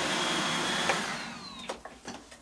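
An iRobot Roomba robot vacuum running on its own schedule, then switched off at its button: the steady motor and fan noise with a thin high whine runs for about a second, then the whine falls in pitch and the noise dies away, with a couple of clicks near the end.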